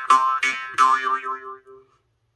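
Nepalese small murchunga (a jaw harp in the key of C) being plucked: three quick twangs with shifting overtones over a steady drone, then the ringing fades out and stops near the end.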